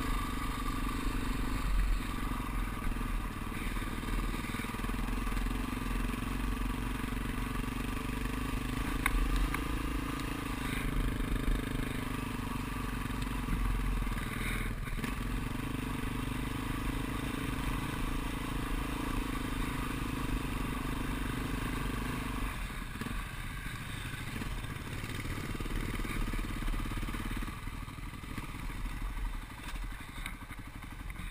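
Dual-sport motorcycle engine running steadily at riding speed on a gravel road, with low rumble of wind on the helmet camera. The engine note changes about two-thirds of the way through and the sound falls away near the end as the bike slows to a stop.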